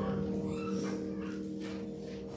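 The last sustained chord of keyboard music dying away, with a few faint rustles over it.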